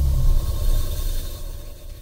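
A deep, low rumble that fades away over about two seconds: the tail of a short music sting.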